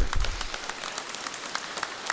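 Audience applauding: a dense patter of many hands clapping, loudest at first and settling a little lower after about half a second.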